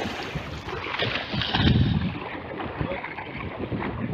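Choppy water washing in at the water's edge, with wind buffeting the microphone and a surge about a second and a half in.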